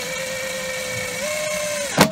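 Cordless drill running steadily, driving a through-bolt into a seacock's flange through the sailboat hull for a dry fit. Its whine steps up slightly in pitch partway through, then stops with a sharp click.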